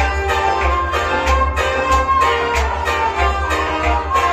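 Kashmiri Sufi music played live on a harmonium, with a plucked string instrument and a steady percussion beat.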